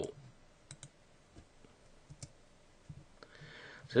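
A handful of faint, scattered clicks from a computer mouse and keyboard as a command is selected and entered in a terminal.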